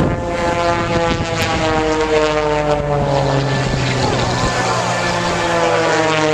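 Propeller engines of two aerobatic planes droning overhead, their pitch sliding slowly downward; a second, lower engine note joins about two seconds in.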